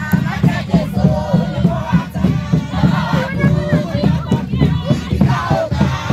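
A crowd of worshippers singing and calling out together in a Kikuyu gospel (kigooco) song, loud and lively, over a drum beating a steady rhythm.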